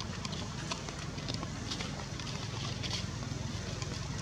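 Steady low wind rumble on the microphone, with a scattered run of short, sharp high clicks.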